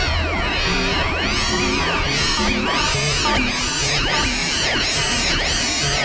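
Experimental electronic noise music made on a laptop: many layered pitch glides that swoop up and fall back, repeating about twice a second, over a pulsing low drone.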